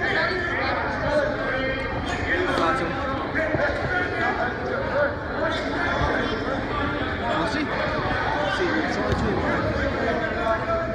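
Indistinct chatter of many people talking at once, with no single voice clear, in a gymnasium.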